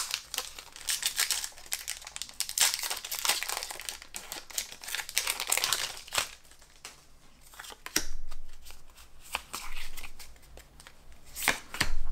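Foil wrapper of a Pokémon booster pack crinkling and tearing as it is opened, a dense crackle for the first six seconds or so. After that comes a fainter rustle with light clicks as the cards are drawn out and handled.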